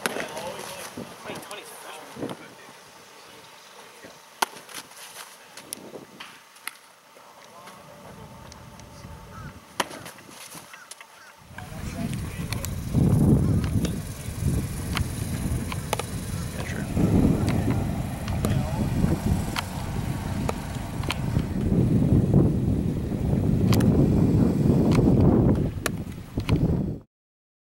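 Outdoor baseball catching drills: sharp pops of balls hitting a catcher's mitt, scattered through the first half, with faint voices. From about halfway a loud, gusting low rumble takes over and runs on under the pops.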